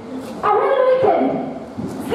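Speech only: a voice talking for about a second, with the words not made out.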